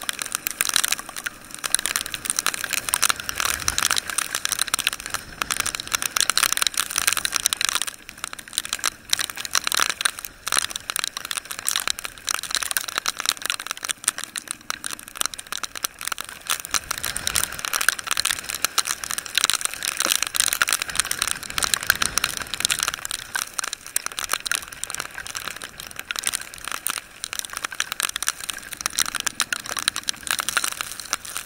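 Dense, continuous crackling of rain striking the camera and the riders' rain gear on a moving motorbike in a heavy downpour.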